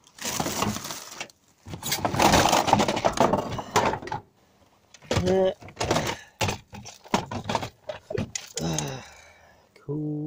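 Rummaging through junk in a skip: a long, loud rustle and crinkle of plastic wrapping, then a run of short knocks and clatters as hard plastic toys are shifted about.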